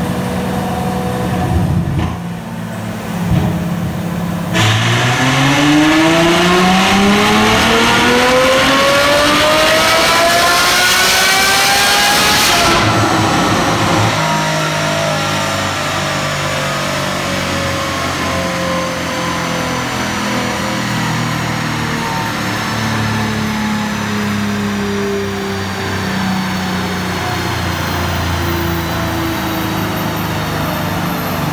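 Ferrari F12's naturally aspirated 6.3-litre F140 V12, remapped for higher-octane, higher-ethanol fuel, running on a chassis dynamometer. It idles, then about four seconds in it jumps into a dyno pull with the pitch rising smoothly for about eight seconds, cuts off sharply, and coasts down with falling pitch back to a steady idle.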